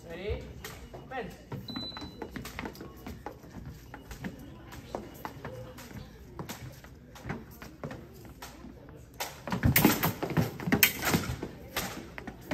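Fencers' footwork on a fencing strip: shoe taps, stamps and knocks in an irregular run. About nine seconds in it builds into a louder, quicker clatter as the fencers close and attack.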